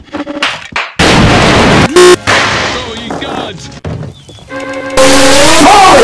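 Edited cartoon soundtrack of loud, sudden noise blasts: one about a second in, a short loud buzz at two seconds, and another long loud blast from about five seconds with a wavering, warped voice running through it.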